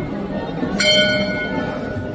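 A temple bell struck once, about a second in. Its clear ringing tones fade away over the following second, and the ring of an earlier strike is still dying out at the start.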